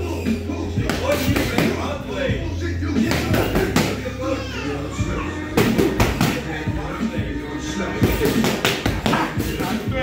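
Boxing gloves smacking against focus mitts in quick bursts of several punches, over background music and voices.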